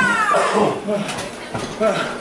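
People shouting and yelling, beginning with a high yell that falls in pitch, followed by shorter calls.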